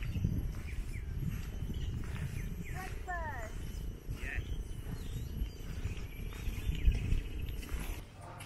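Wind buffeting the camera microphone, an uneven low rumble throughout. A brief, faint pitched call comes through about three seconds in.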